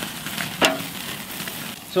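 Beef ribs sizzling as they are laid on a hot grill grate over a burning wood fire, with one sharp clack a little over half a second in.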